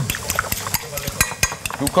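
Fat crackling in a frying pan: a dense run of irregular small pops.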